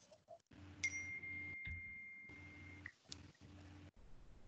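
Faint video-call line noise: a low hum that cuts in and out, and a steady high beep lasting about two seconds.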